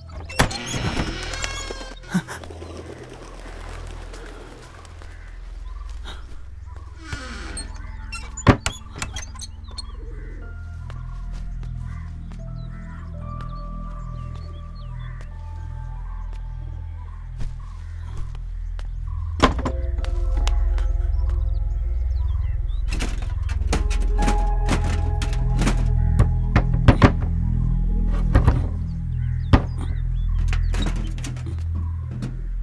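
Low, pulsing film score with sustained tones, swelling louder about two-thirds of the way through. Over it, a wooden door creaks open at the start, and scattered knocks and thunks come from objects being handled.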